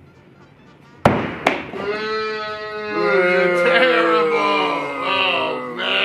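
A throwing axe strikes the wooden target board with a sharp, loud thunk about a second in, followed by a second, smaller knock half a second later. Then men's drawn-out vocal exclamations rise and fall.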